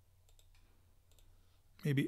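A few faint computer mouse clicks, then near the end a synthesizer preview of a MIDI bass loop starts playing loudly.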